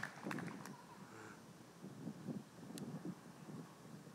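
Faint outdoor ambience with soft, scattered ticks and light rustles.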